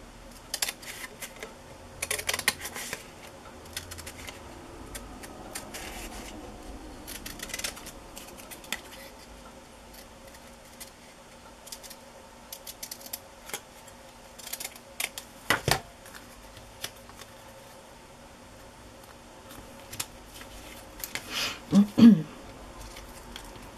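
Scissors snipping through brown cardstock in short, irregular cuts, with a louder knock near the end.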